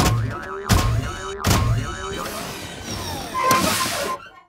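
Cartoon sound effects of a huge robot dragon moving: three heavy thuds about three-quarters of a second apart, over background music.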